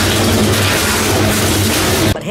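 Loud, steady machinery noise with a low hum from a hatchery conveyor belt, starting and stopping abruptly.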